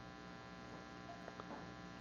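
Faint, steady electrical mains hum made of many even tones, with a couple of faint ticks a little after a second in.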